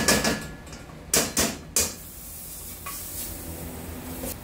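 A metal spoon scraping and knocking against a pot as margarine is spooned into it, in a few short loud strokes at the start and again just after a second in. The margarine then sizzles faintly in the pot, which is hot enough to risk burning it.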